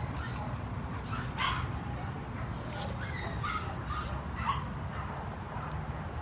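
Several short dog barks, spaced about a second apart, over a steady low hum.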